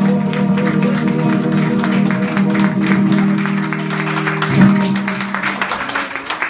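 Acoustic guitar's final chord ringing out, then strummed once more about four and a half seconds in to close the song, with scattered audience clapping underneath.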